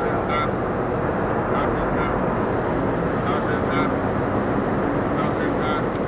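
Steady, loud rumble of a running vehicle, with people talking faintly over it.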